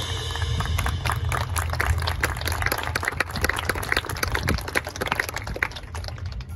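Scattered applause from the stand audience, many irregular hand claps over a steady low rumble, heard in a break after the marching band cuts off a held chord.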